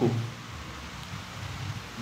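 A pause in a man's talk: steady low hiss and hum of the room and microphone, after the tail of a spoken word at the very start.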